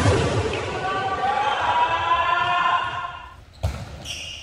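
A sustained voice, with long held pitched tones, fades out over the first three seconds. About three and a half seconds in comes a single sharp thud of a ball being struck on a gym floor.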